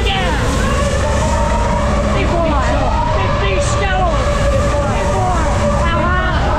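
Several riders screaming and yelling on a fast-spinning fairground ride, over heavy wind rumble on the microphone.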